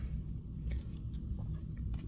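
Quiet handling of trading cards: a few faint, soft ticks as cards are set down and a foil card pack is picked up, over a low steady room hum.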